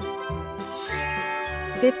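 A bright, tinkling chime sound effect that rises into a sparkly shimmer about a second in, over children's background music with a steady beat.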